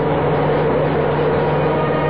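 Radio-drama sound effect of a heavy truck's engine running steadily as it drives along.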